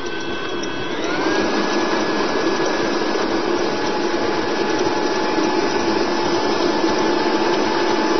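Electric stand mixer motor running while it creams butter and sugar. It steps up to a higher speed with a rising whine about a second in, then runs at a steady pitch.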